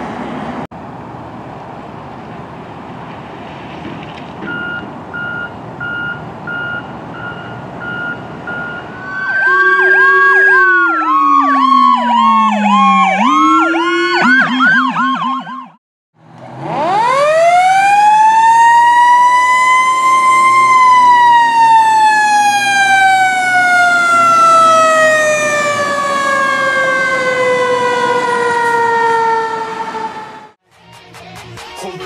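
Emergency-vehicle sirens. After a moment of road traffic and a few seconds of steady pulsed beeping, electronic sirens yelp and wail for about six seconds. After a brief gap a mechanical siren winds up to full pitch and then slowly coasts down.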